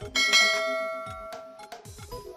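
A bright bell chime rings once, struck just after the start and fading over about a second and a half, as a notification-bell sound effect. It plays over background music with a drum beat.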